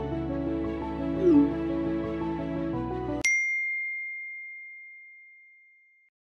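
Background music that stops suddenly about three seconds in, with a short gliding sound effect a little over a second in. A single bright phone-notification ding follows the cut and rings out slowly, the chime of an incoming text message.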